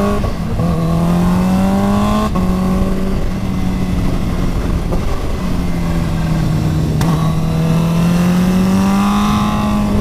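Four-cylinder sports motorcycle engine pulling hard, its pitch climbing and stepping down at gear changes, then rising steadily before easing off near the end. Heavy wind rush lies underneath, and there is one sharp click partway through.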